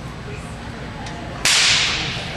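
Tennis racquet slammed down and cracking, about one and a half seconds in: one sudden, very loud crack with a noisy tail that fades over about half a second.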